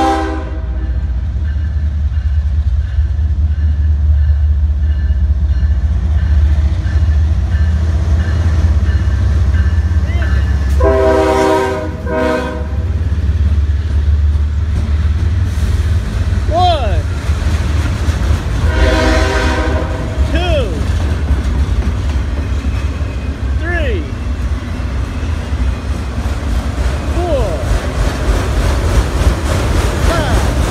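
A Norfolk Southern freight train with three diesel locomotives rumbles past at close range, its multi-chime air horn blowing three times: the end of a blast at the start, a longer blast of about a second and a half some eleven seconds in, and another about nineteen seconds in. After the locomotives pass, the autorack and container cars roll by with a few brief squeals.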